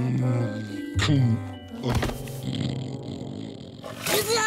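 Cartoon music score with a bear's deep, growling vocal grumble.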